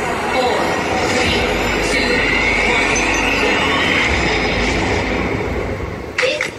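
Train-like sound effect opening a dance-music track: a steady rushing noise with a squeal that rises slowly in pitch through the middle.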